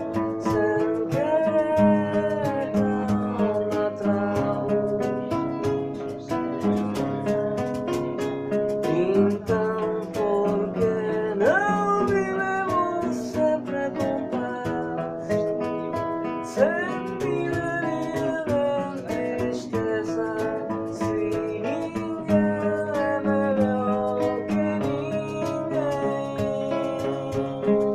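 Nylon-string classical guitar played with the fingers, picked notes and chords throughout. A voice sings over it in long, gliding notes.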